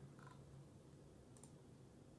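Two quick computer mouse clicks about one and a half seconds in, over near-silent room tone with a faint low hum.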